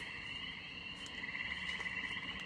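Faint, steady chorus of calling animals: a pulsing, high-pitched trill that carries on without a break.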